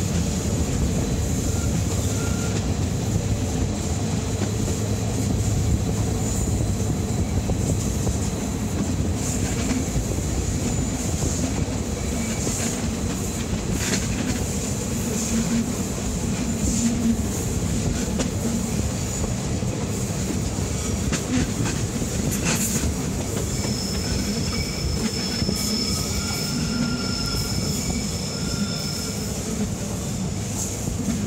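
Bernina Express train running on the rails, heard from on board: a steady rolling rumble with a few sharp clicks. Faint high wheel squeal comes in the second half as the train takes the tight curve of the spiral.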